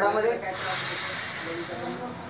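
A steady hiss of air, starting sharply about half a second in and lasting about a second and a half: a patient's deep breath drawn through an inhaler.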